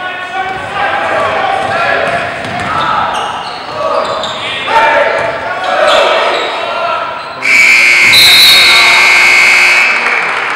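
Basketball dribbling on a hardwood gym floor under the voices of crowd and players. About seven and a half seconds in, a loud, steady, high-pitched signal tone starts suddenly and holds for about two and a half seconds, stopping play.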